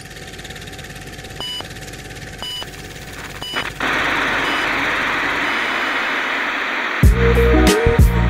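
Outro sound effects: a building hiss with three short beeps about a second apart, then a louder steady burst of noise. About seven seconds in, a music track with heavy low notes kicks in.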